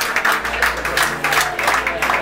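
Audience clapping, a dense irregular run of claps, with low steady musical tones underneath.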